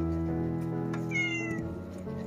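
A cat's short meow about a second in, falling slightly in pitch, over steady background music.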